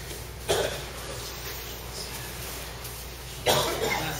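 Two coughs, about three seconds apart, over a steady low room hum.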